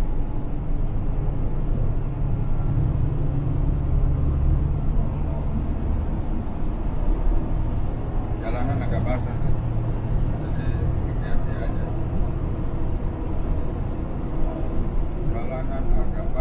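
Steady low drone of a semi truck's engine and tyres on the highway, heard from inside the cab.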